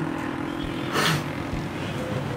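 Street traffic: motor vehicles running, with a brief louder burst of noise about a second in.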